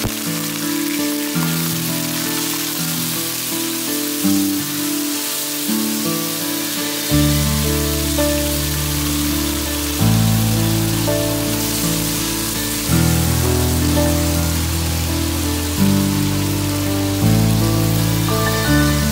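Chicken pieces sizzling in hot oil in a wok, a steady hiss, under background music of slow, held notes with a deep bass line.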